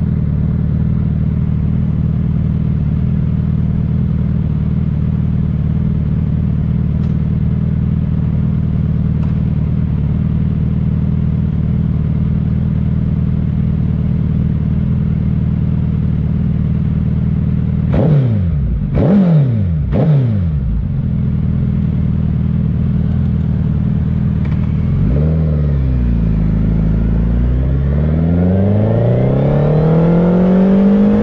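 Suzuki Hayabusa's inline-four engine idling steadily, then blipped three times in quick succession about two-thirds of the way in. Near the end the revs dip as the bike moves off, then climb steadily as it accelerates away.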